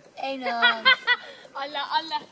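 A few people talking in the background, with some light chuckling.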